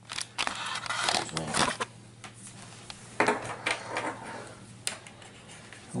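Handling noise of cables and connectors being moved and plugged in: several short rustles and clicks in the first two seconds and again a little past the middle, over a faint steady low hum.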